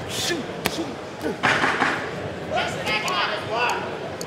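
Boxing hall sound during a bout: a sharp smack about two-thirds of a second in and a short noisy burst at about a second and a half, then crowd and corner voices shouting over the fight in the large hall.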